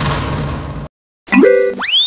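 Cartoon comedy sound effects: a dense rattling burst that cuts off abruptly about a second in, then after a brief silence a quick stepped jingle and a whistle that slides sharply up and then slowly back down, like a boing.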